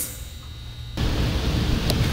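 About a second of quiet room hum, then a sudden switch to a steady low rumble and hiss of outdoor background noise.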